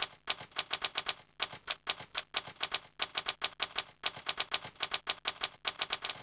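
Typewriter keystrokes used as a sound effect: a rapid run of sharp key clicks, about five or six a second, in short bursts with brief pauses, as the text is typed out.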